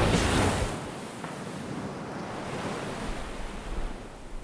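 Ocean surf: a steady wash of waves breaking, heard after the end of the music dies away within the first second.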